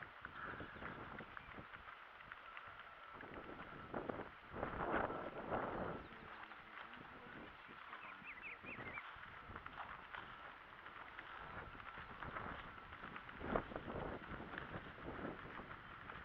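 Footsteps and the swish of grass as people walk along a grassy dirt track, with a louder rustle about four to six seconds in. Birds chirp in the background, a few short high calls near the middle.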